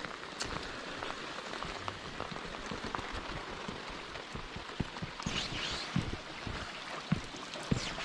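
Steady rain pattering on wet concrete and on the lake surface, a dense haze of small drop ticks with a few louder taps a little past the middle.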